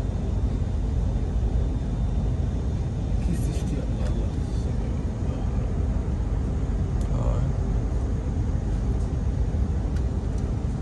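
Steady low rumble of a moving train, heard from inside the carriage, with faint voices briefly about three and seven seconds in.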